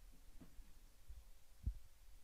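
Near silence: faint room tone, with one soft low thump about three-quarters of the way through.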